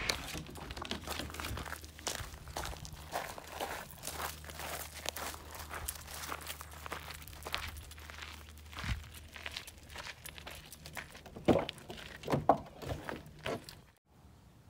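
Footsteps crunching on gravel and dirt, an irregular run of short crunches with a few louder ones near the end, over a steady low hum.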